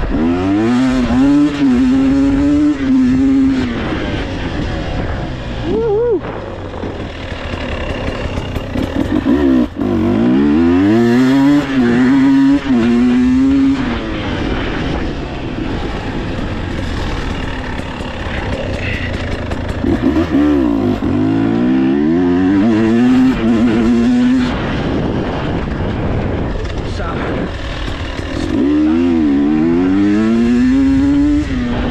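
Husqvarna TE 300 Pro two-stroke enduro engine under hard acceleration, its pitch sweeping up and holding high in four bursts of throttle, with the revs dropping away between them about 4, 14 and 24 seconds in.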